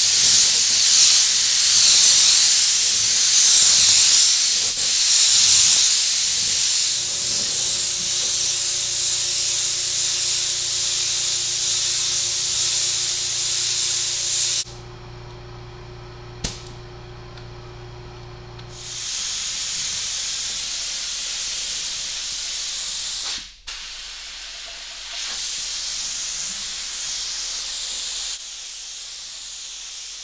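Old siphon-feed spray gun with a 1.7 tip spraying clear coat loaded with silver metal flake: a loud, steady hiss of air and paint. It cuts off for a few seconds about halfway through as the trigger is let go, then resumes, with another brief break a few seconds later.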